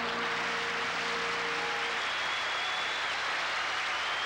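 Studio audience applauding as the song's orchestral ending dies away: a last held note fades out about halfway through and the clapping goes on steadily. A faint thin high tone sounds over it in the second half.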